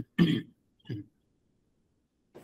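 A person clearing their throat: a short burst just after the start, then a fainter, shorter one about a second in.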